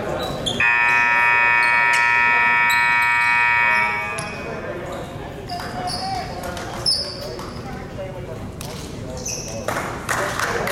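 Gymnasium scoreboard horn sounding one long, steady blast of about three seconds, echoing in the hall. After it come voices and a sharp knock.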